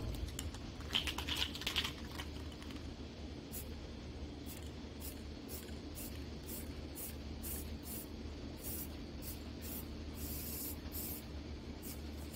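Aerosol can of Rust-Oleum brown primer being shaken, its mixing ball rattling faintly about three times a second, then a brief hiss of spray near the end.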